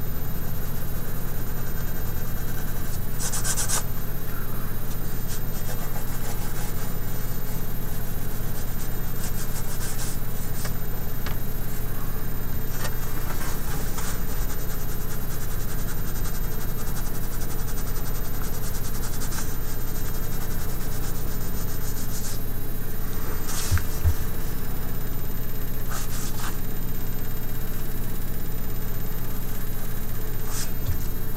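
White colored pencil scratching across toned drawing paper in scattered short strokes, the clearest about three and a half seconds in and again near twenty-three seconds. A steady low hum runs under it.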